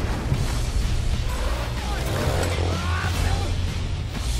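Dramatic action-trailer soundtrack: music with a heavy, sustained deep bass layered with explosion and fire sound effects.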